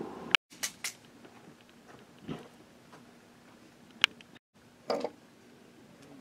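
Quiet handling noises as a square marshmallow is pushed onto a metal telescoping roasting fork: a few light sharp clicks, a soft knock and a short rustle, with the sound cutting out briefly twice.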